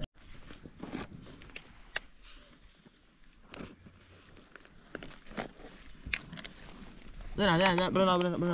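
Dry twigs and leaves give scattered small crunches and snaps as they are handled and laid in a pile. Near the end a person's voice starts, louder than everything before it.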